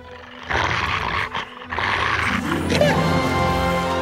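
A large dog growling in two short outbursts about a second apart, followed by orchestral background music swelling in.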